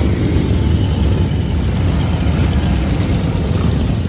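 A group of chopper-style motorcycles riding past, their engines running together in a loud, steady, deep low sound.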